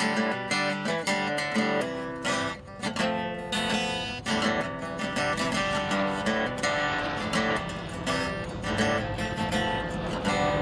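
Acoustic guitar music, strummed and plucked, playing continuously.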